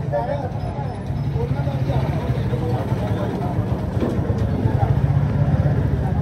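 Busy market street: several people talking close by, over motorcycle and auto-rickshaw engines running steadily underneath.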